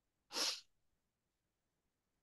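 A single short, sharp, hissy breath noise from a person, about half a second long, a few tenths of a second in.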